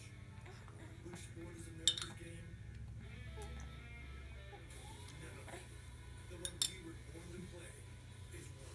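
Metal spoon clinking against a glass baby-food jar: one sharp clink about two seconds in, then two quick clinks about six and a half seconds in.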